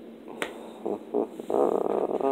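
A single sharp click about half a second in as the Blu-ray steelbook packaging is handled, followed by a few short low vocal sounds, the longest near the end.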